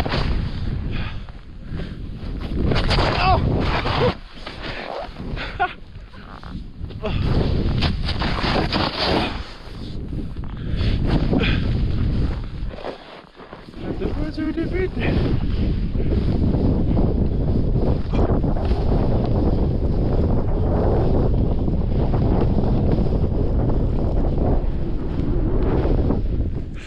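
Wind rushing over the action camera's microphone as a snowboard slides and carves through deep powder snow, a loud uneven rushing noise that swells and eases with the turns and drops away briefly about thirteen seconds in.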